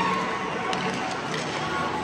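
Ice-rink ambience during a youth hockey game: steady crowd chatter with faint background music, and a few light clicks from play on the ice.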